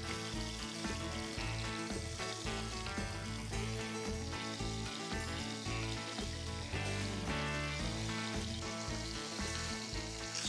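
Background music with a steady, stepping bass line, over the sizzle of breaded chicken breasts shallow-frying in hot oil in a cast iron skillet.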